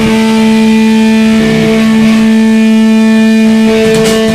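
Loud live rock band music: an electric guitar holds one sustained, droning chord over a noisy wash, with no drum hits until the beat comes back in just after.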